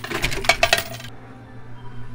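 Coins clinking and clattering in a coin pusher machine, with a dense run of clinks through the first second and then quieter, over a low steady hum.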